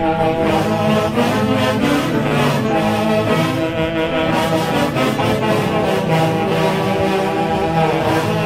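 A Peruvian orquesta típica of saxophones, clarinets and violins playing a tunantada. A full wind section carries the melody together, steady and loud, with no break.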